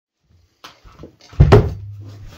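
Handling noise: a few light knocks and rustles, then two heavy thumps close together about one and a half seconds in.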